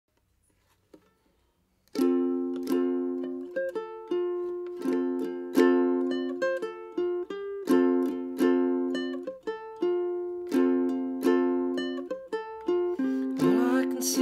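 Ukulele strumming chords as a song's introduction, starting about two seconds in after near silence, each strum ringing and fading before the next. A man's singing voice comes in near the end.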